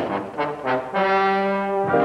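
Brass musical cue led by trombones: a few short phrases, then a held chord from about a second in that moves to a new chord near the end.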